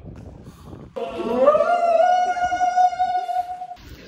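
A person's high voice holding one long sung or called note for nearly three seconds, sliding up at the start and then held steady before it stops.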